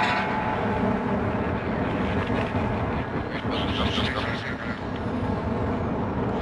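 Industrial noise music from a vinyl LP: a dense, steady wall of noise with low droning tones under it, coming in suddenly at the start.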